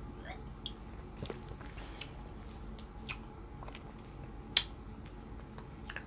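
Faint lip and mouth clicks of someone sipping and tasting a plum liqueur over quiet room tone, with one sharper click a little past halfway.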